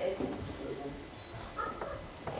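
A teenage girl's voice making short wordless animal-like sounds, acting out an animal: one right at the start and a higher-pitched one near the end.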